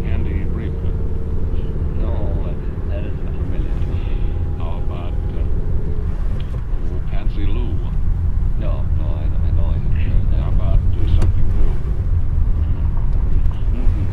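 Steady low rumble of a car driving along a road, with an old radio broadcast voice talking indistinctly over it, thin and muffled.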